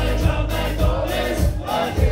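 Live rock band playing: drums, electric bass and guitars, with a voice singing over them, as heard from the audience.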